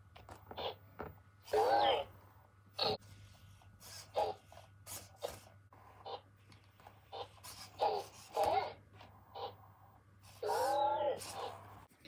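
A KEYi Tech Loona robot pet making short, cute electronic chirps and babbling calls while it plays, with a longer wavering call near the end, amid light clicks.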